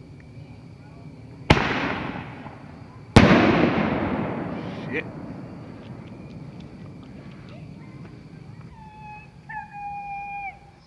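A 5-inch canister firework shell loaded with extra flash powder ('Vitamin F') to boost its report: a loud bang from the launch, then about a second and a half later a louder burst report that rumbles and echoes away for a couple of seconds.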